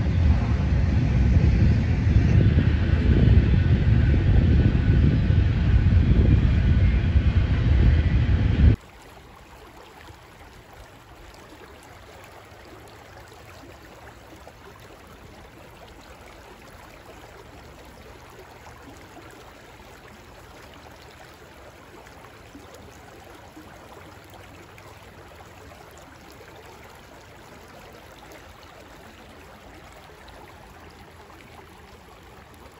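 Loud wind rumbling on the microphone outdoors for about nine seconds, cutting off suddenly to a faint, steady rush of shallow stream water running over stones.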